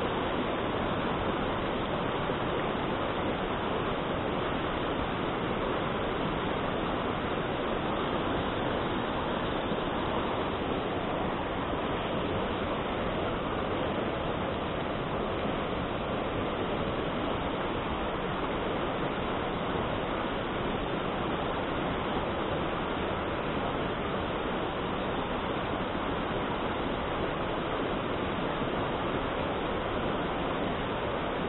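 Mountain stream rushing over boulders through small rapids: a steady, unbroken noise of white water.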